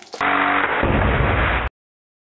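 Compressed air from a blow gun driving a fidget spinner: a loud air hiss with a steady whirring hum, cut off abruptly near the end.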